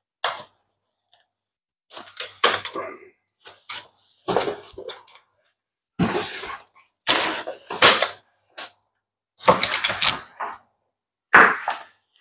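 A rolling backpack being handled with its telescoping metal pull handle extended: a string of about eight irregular clatters and knocks, each lasting a half-second to a second.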